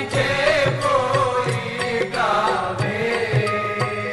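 Devotional aarti song: a voice chanting in a sung melody over instrumental accompaniment with a steady percussion beat.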